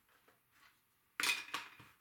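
A sudden clatter of a hard object knocked or set down on a craft table, then a few lighter knocks.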